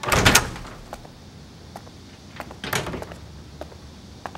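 Wooden door being opened, loudest in the first half-second, then a second, quieter noise about three seconds in.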